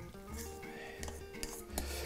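Metal spoon stirring and scraping a moist yolk, tuna and mayonnaise filling against a stainless steel bowl, with quiet background music underneath.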